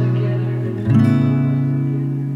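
Acoustic guitar playing in a mellow acoustic pop song. A strummed chord rings and fades, then a new chord is struck about a second in and left to ring.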